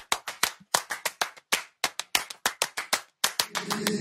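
A percussion break in an a cappella pop song: a quick, rhythmic pattern of sharp handclaps with no singing. Near the end the claps stop and the sung chords swell back in.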